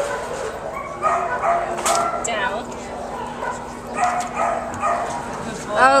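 Dogs yipping and barking in short bursts of bending pitch, mixed with indistinct voices.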